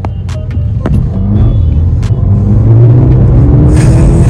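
Mercedes-AMG A35's turbocharged four-cylinder engine heard from inside the cabin under hard acceleration, its note rising steadily and growing louder. Near the end there is an upshift with a brief burst of hiss, then the revs climb again.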